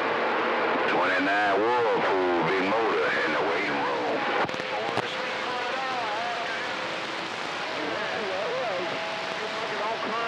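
Distant stations' voices coming in through the RCI-2980 radio's speaker, garbled under a haze of static. The signal is strong at first, then weakens after a couple of clicks about halfway through, when steady heterodyne whistles come in under the fainter voices.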